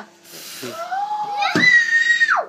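Family voices around a toddler at a birthday cake: a long drawn-out cry of "No!", then a high-pitched squeal held for about a second near the end.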